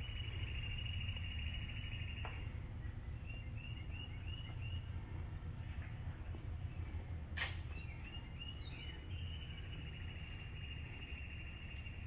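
A bird's high chirps and trills, in short runs of arched chirps and longer held trills, over a steady low hum. A single sharp click comes a little past halfway.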